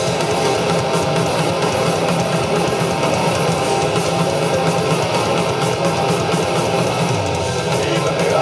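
Live blackened thrash metal band playing: distorted electric guitars, bass guitar and fast drums in a dense, steady wall of sound, heard through the PA from within the crowd.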